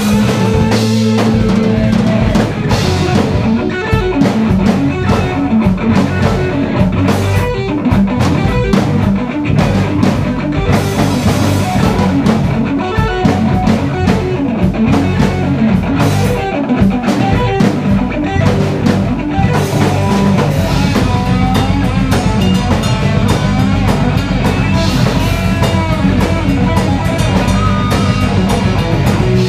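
A heavy metal band playing live: electric guitars over a drum kit, loud and dense, with fast, steady drum hits.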